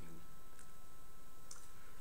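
A pause between words filled by steady room hum with a faint thin high tone, and a single faint click about one and a half seconds in.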